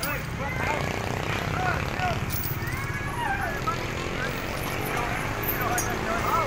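Steady low rumble of road traffic, with many short, rising-and-falling high calls scattered over it.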